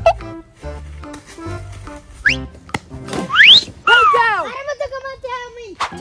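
Comedic background music with steady, stepping bass notes. Two quick rising whistle-like slides come about two and three seconds in, followed by a wavering, bouncing tone through most of the second half.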